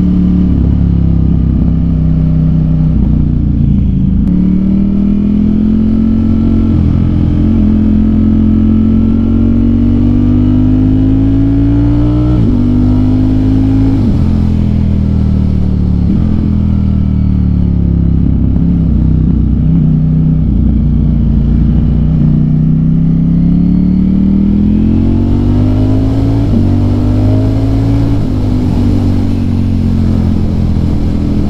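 Ducati Streetfighter V4S's V4 engine heard from the saddle while riding, its pitch climbing as it accelerates, dropping suddenly at several gear changes, easing off for a while midway, then pulling up again.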